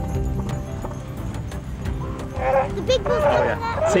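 Bull northern elephant seal calling with its head raised, a low threat call made to other bulls, heard over background music. Voices join in the second half.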